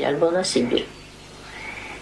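An elderly woman speaking Polish in a wavering voice for the first second, then a pause with a faint steady high tone.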